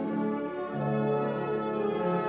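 Orchestra of strings and horns playing slow, sustained chords, the harmony shifting about once a second.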